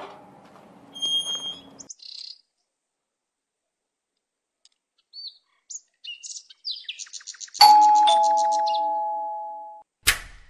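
Electronic doorbell ringing: a string of bird-like chirps, then a two-note ding-dong, high note then low, that fades away over about two seconds.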